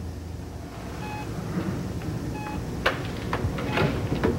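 Hospital patient monitor giving two short electronic beeps about a second and a third apart, over a low steady hum. A few sharp clicks and knocks come near the end.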